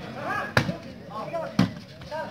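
Volleyball struck hard by hand twice, about a second apart, during a rally, with players and spectators shouting.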